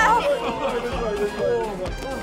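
Several people's voices chattering and exclaiming over background music.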